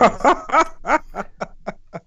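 A man laughing in a run of short chuckles, about four a second, that fade away toward the end.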